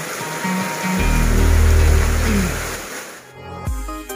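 Steady hiss of heavy rain, joined about a second in by a deep bass swell that dies away. Near the end the rain sound cuts off and electronic intro music begins.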